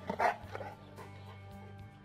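Bully Kutta (Pakistani mastiff) barking: one loud bark about a quarter second in, followed by a couple of fainter ones, over background music that carries on alone for the second half.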